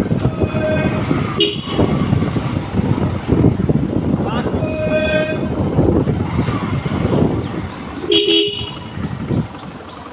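Motorcycle running along a street with wind buffeting the microphone, while a vehicle horn toots four times in short beeps, the longest about five seconds in.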